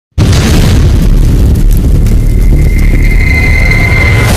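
Logo-intro sound effect: a loud, sustained low rumbling boom that starts abruptly, with a thin high ringing tone coming in about halfway through.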